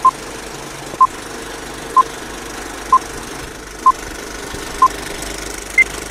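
Film-leader countdown sound effect: a short beep about once a second, six at one pitch and a seventh, higher-pitched beep near the end, over the steady running noise of a film projector.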